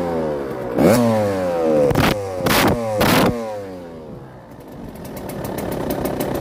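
Dirt bike engine being blipped: the revs rise sharply and fall away a few times, with three loud short bursts of revving in the middle, then it drops back and settles into a steady idle near the end.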